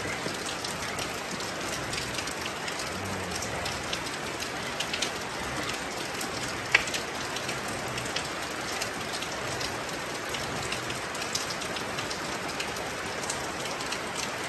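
Steady rain falling, a continuous hiss scattered with sharp drop ticks, one louder click about seven seconds in.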